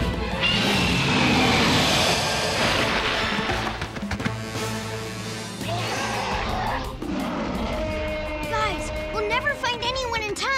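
Cartoon action soundtrack: dramatic orchestral score under a loud sharptooth (tyrannosaur) roar and crash effects in the first few seconds, easing into music with short pitched vocal sounds near the end.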